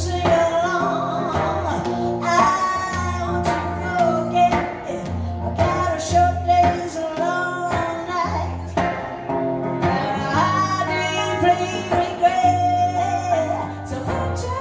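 Live song: a woman singing long, wavering held notes into a microphone over her own amplified hollow-body electric guitar, with steady low bass notes underneath.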